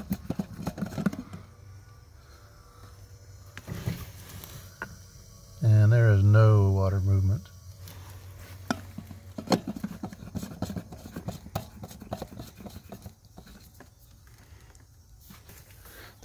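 Scattered clicks and scrapes of hands handling the plastic parts of a sprinkler control valve in its valve box. About six seconds in, a man's voice makes one drawn-out, wavering sound lasting under two seconds.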